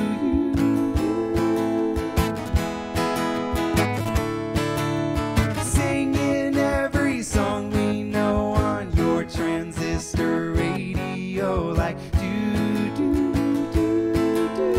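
Acoustic guitar strummed in a steady rhythm, playing chords of a country-pop song.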